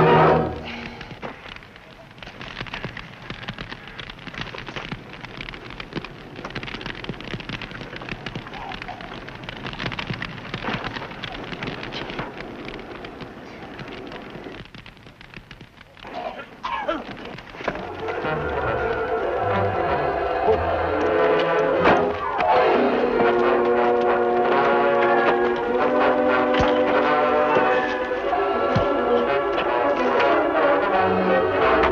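Fire crackling steadily, a dense patter of small snaps. A little past halfway, an orchestral score with brass comes in and grows louder to the end.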